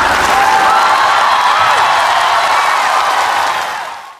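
Concert audience applauding and cheering after a song ends, with a few whistles over the clapping, fading out near the end.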